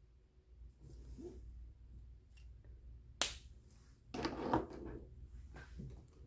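Handling noise at a desk: a single sharp click about three seconds in, then about a second of rustling and shuffling, with fainter rustles on either side.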